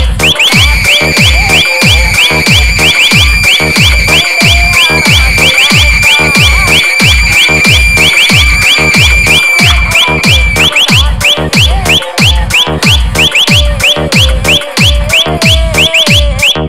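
Electronic DJ remix in the 'hard punch dholki' style: heavy bass kicks pounding several times a second under a fast train of short high chirps, with a held high synth note through most of the first ten seconds.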